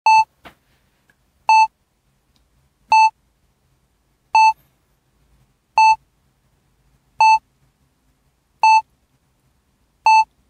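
Short electronic beeps of one steady pitch, each about a fifth of a second long, repeating evenly about every second and a half: seven in all, with silence between them.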